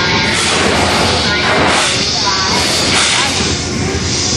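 Loud dark-ride show soundtrack: a mix of music and sound effects, with hissing surges about once a second.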